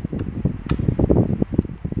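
Low, uneven background rumble, with two small sharp clicks less than a second in as a small screwdriver works the screws of a printer mainboard's screw terminal block.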